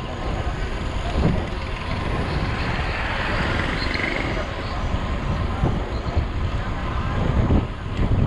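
Wind buffeting the microphone of a camera on a moving road bicycle, mixed with tyre and road noise: a steady low rush that holds even throughout.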